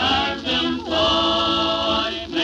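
Sacred Harp singing group singing a cappella in shape-note part harmony: a few short chords, then one long held chord from about a second in.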